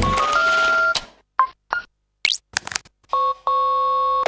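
Electronic keypad beeps: a short run of stepped tones, two brief beeps, a quick rising sweep and a few clicks, then a steady tone held for about a second near the end.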